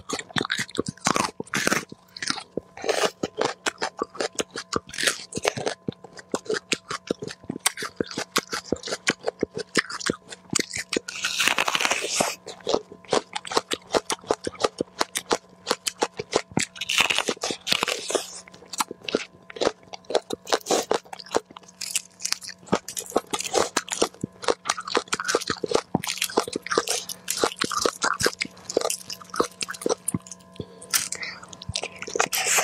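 Close-miked crunching bites and chewing of raw vegetables: a knob of raw ginger, then a whole raw red onion, in a steady run of sharp crunches.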